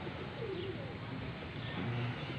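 Pigeons cooing: a few short, falling coos over a steady outdoor background hiss.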